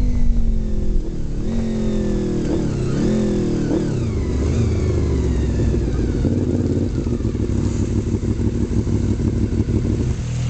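Motorcycle engine slowing down, with a few brief rev blips in the first four seconds, then running steadily at low revs.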